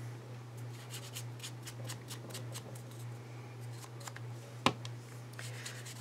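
Faint, irregular scratchy strokes of a small brush rubbing ink onto paper, over a steady low hum, with a single sharp tap about three-quarters of the way through.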